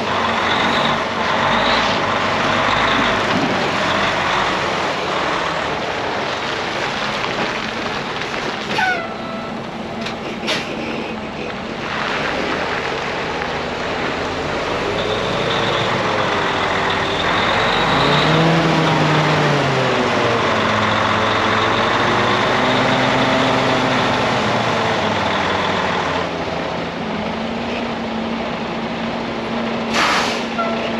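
A 2019 Freightliner Cascadia day cab's Detroit diesel engine runs under load as the tractor is driven around a yard, its pitch wavering up and down midway through. Two short sharp sounds come about nine and ten seconds in.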